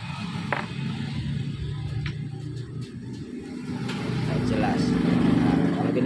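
A vehicle engine running in the background, getting louder in the last two seconds, with a few light clicks of scissors cutting the insulation off a fan motor's wires.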